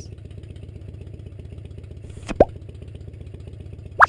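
A single short, rising 'plop' sound effect a little past halfway, over a steady low rumble.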